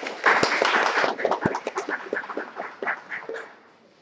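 Audience applause: a burst of clapping that is loudest at the start and dies away over about three seconds.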